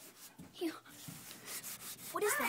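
Faint rubbing and rustling, with a brief faint voice sound about half a second in.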